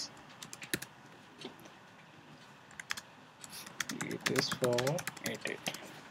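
Typing on a computer keyboard: irregular runs of keystroke clicks as a line of code comment is typed, busiest in the second half.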